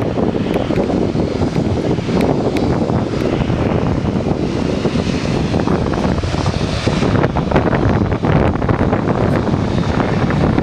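Boeing 787-9 Dreamliner's jet engines running at low power as it taxis, a steady loud rumble with a hiss. Wind buffets the microphone throughout.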